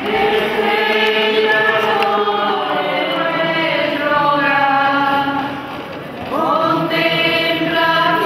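A group of voices singing a slow religious hymn together in long held notes, with a short break between phrases about six seconds in.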